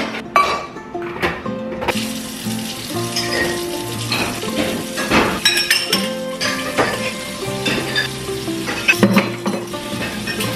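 Food sizzling in a frying pan, a steady hiss that starts about two seconds in, with metal utensils and cookware clinking now and then.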